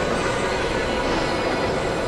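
Experimental electronic noise music: a dense, steady synthesizer noise drone with faint held tones above it.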